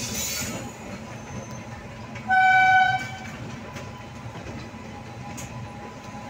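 Indian electric locomotive horn giving one short, steady blast about two seconds in, over the steady rumble of trains running side by side on parallel tracks.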